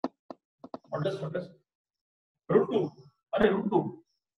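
A man's voice speaking in three short phrases with pauses between, preceded by a few brief clicks or taps in the first second.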